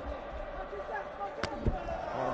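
A kickboxing strike landing with one sharp smack about one and a half seconds in, followed by a softer low thump.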